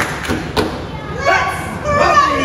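Two sharp thumps on a stage, about half a second apart, followed by a voice calling out with a rising and falling pitch.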